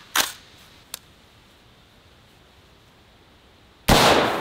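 A single .223 rifle shot from an AR-15 near the end: a sharp crack followed by a long fading echo. Before it, a sharp click just after the start and a smaller one about a second in as the rifle is handled, then a quiet stretch.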